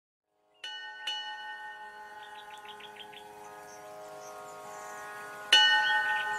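Struck chime tones ringing out with many overtones: two strikes about half a second apart early on, and a louder third strike near the end. A quick run of about seven bird chirps sounds between them.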